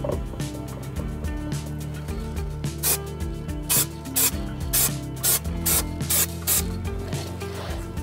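Aerosol can of wheel paint sprayed in about eight short hissing bursts, laying light dusting coats on the wheel centre caps, over background music.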